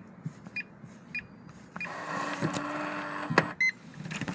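Electronic keypad deadbolt: a few short button beeps as the entry code is pressed in, then the lock's motor runs for about a second and a half and stops with a click, followed by a quick rising chirp as the bolt unlocks.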